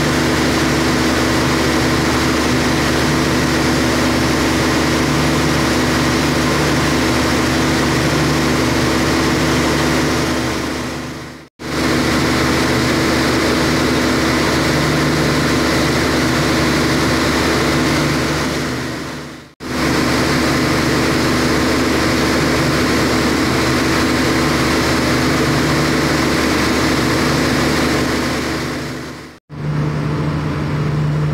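Turbocharged common-rail diesel generator set running steadily under load, a loud even engine drone. The sound dips out briefly three times.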